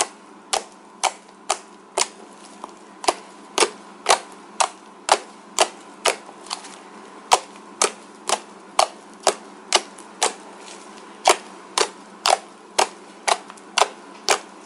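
Fingers poking and pressing fluffy snow slime, its trapped air pockets popping in sharp clicks about twice a second.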